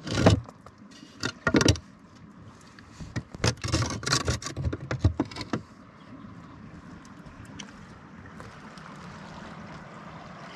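Stones clinking, knocking and scraping against each other as they are shifted by hand in a stone-built kiln, in several short clusters over the first half. After that, only a steady faint rushing background noise.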